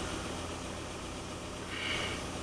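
Steady low hum with an even hiss, the background noise of a room with running electronics. A faint brief sound comes near the end.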